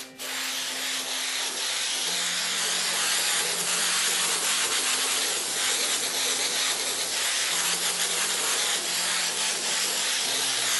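Aerosol can of spray adhesive hissing in one long steady spray, with a split-second break right at the start.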